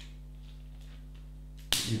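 Snap-on plastic back cover of a Samsung Galaxy S4 being pressed onto the phone: a faint click at the start and a sharp click near the end as its clips engage. A steady low electrical hum sits under it.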